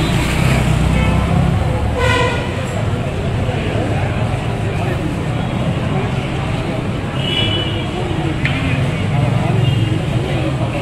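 Roadside traffic with a steady low rumble and the indistinct chatter of a crowd. A short vehicle horn toot comes about two seconds in, and a brief higher horn tone near the seven-and-a-half-second mark.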